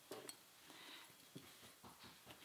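Near silence, with a few faint, short rustles and ticks of knit fabric being handled.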